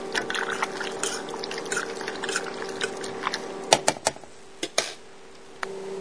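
Spoon stirring cheese into cooked egg noodles and peas in a metal pot: wet, sticky squelching with light scraping, then a few sharp knocks around four seconds in. A steady low hum runs underneath.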